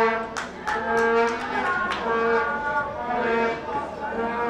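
Fans' horns blown in the stands, sounding repeated held notes at two pitches an octave apart, with drum beats and crowd voices at a football match.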